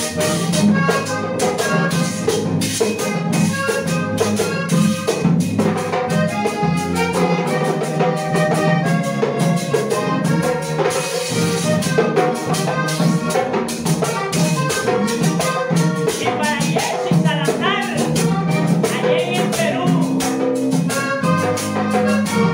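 Vallenato band playing live: a diatonic button accordion carries the melody over an electric bass line, a hand drum and a scraped metal guacharaca, at a steady, lively tempo.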